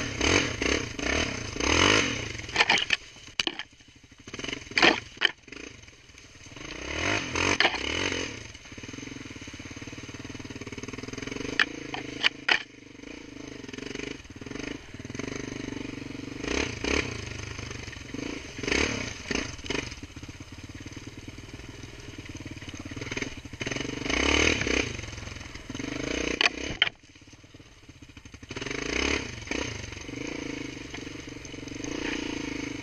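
Small off-road vehicle engine revving up and down over and over as it rides a rough dirt trail. Sharp knocks and clatter from bumps come a few seconds in and again about twelve seconds in.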